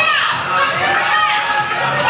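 Crowd cheering and shouting in a hall, with long high whoops that rise and fall in pitch.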